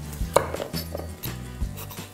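Kitchen knife cutting into a butternut squash on a wooden chopping board: a few knocks of the blade against the squash and board, the sharpest about a third of a second in.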